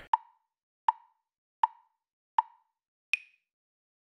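Five short pitched blips at an even pace, about three-quarters of a second apart; the first four are on one pitch and the last is higher.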